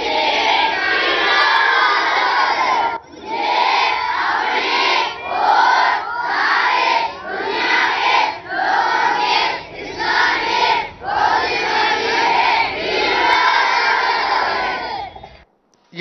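A large group of boys chanting in unison, reciting a motto in Tamil together. From a few seconds in it goes in short rhythmic phrases about a second apart, then longer phrases, and it stops just before the end.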